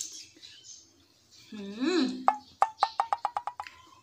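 A woman eating grilled shrimp hums one appreciative "hmm" that rises and falls in pitch, followed by a quick run of about ten sharp clicks over a steady high tone.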